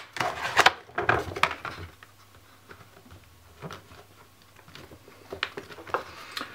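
A paper instruction card and hard plastic case being handled: a cluster of rustles and light clicks in the first second and a half, then only a few faint taps.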